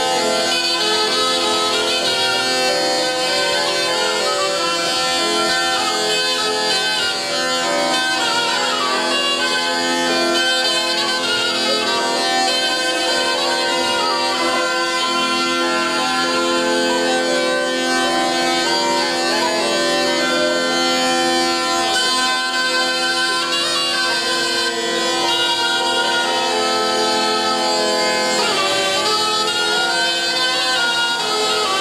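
Southern Italian zampogna bagpipe and ciaramella shawm playing together: steady drones under a moving, ornamented reed melody.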